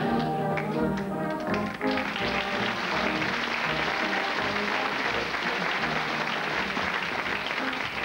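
A short musical sting plays, then from about two seconds in, a studio audience applauds steadily.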